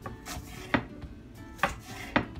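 Chef's knife cutting scallions on a wooden cutting board: two sharp knife strikes against the board, about a second apart.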